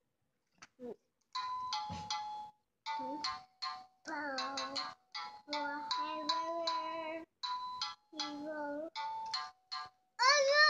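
Electronic children's sound book playing short snippets of tinny recorded tunes with singing. About ten of them start and stop abruptly in quick succession as the buttons on its sound panel are pressed.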